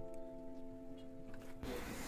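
Soft background music: a few held notes ringing together like a sustained chord. A faint rustling noise comes in near the end.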